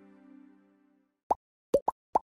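The last held chord of a piece of music fades away, then three quick, rising 'plop' pop sound effects, the second and third close together.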